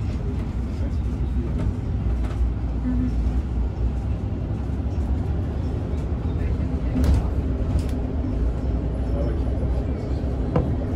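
Cabin noise inside a moving shuttle bus: a steady low engine and road rumble, with two brief knocks or rattles about seven and eight seconds in.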